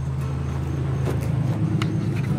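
A steady low motor hum, engine-like, with a few faint clicks over it.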